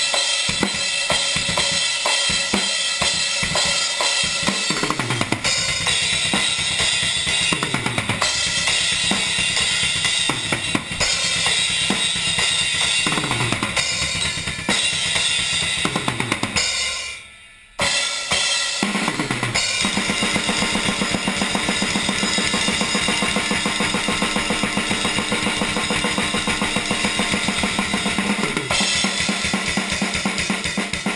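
Acoustic drum kit played fast, with cymbals, snare and bass drum. Rapid strokes are broken every few seconds by fills that drop in pitch. The playing stops briefly a little past halfway, then resumes as a steady, fast stream of strokes.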